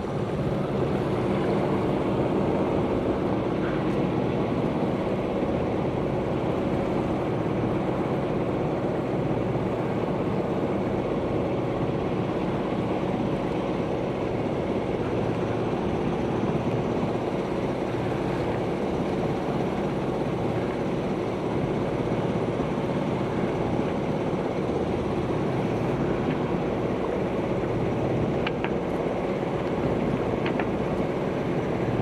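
Sailing catamaran's inboard engine running steadily as the boat motors along, a constant hum under the rush of wind on the microphone and water along the hull.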